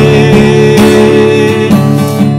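Acoustic guitar strumming chords of a worship song, steady and loud, with no singing in this stretch.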